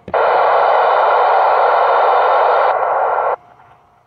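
Loud, steady static hiss from an Icom ID-4100 amateur radio's speaker as it receives the satellite downlink. It lasts about three seconds, then cuts off suddenly to a faint hiss.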